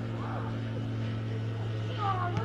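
A steady low hum, with faint shouts from footballers on the pitch about a quarter of a second in.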